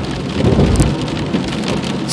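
Cabin noise inside a moving car in the rain: a steady hiss of rain and wet road, with a heavier low rumble from about half a second to a second in.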